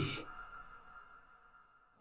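Background music dying away: a faint held high tone fading to near silence.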